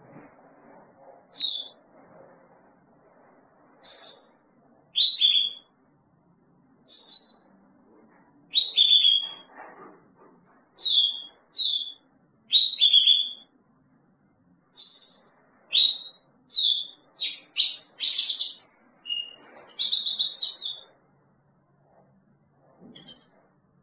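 European goldfinch calling: short, high chirps that fall in pitch, spaced about a second apart, coming faster and running into a longer twittering phrase near the end.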